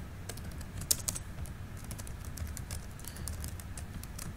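Typing on a computer keyboard: irregular, scattered keystrokes, the loudest cluster about a second in.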